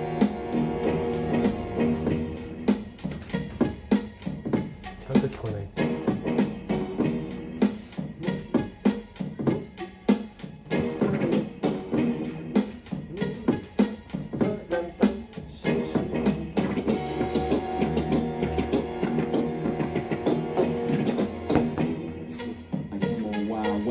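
Recorded music with guitar, bass and drums. Held chords at the start give way to a busy run of sharp beats, and held chords return in the last several seconds.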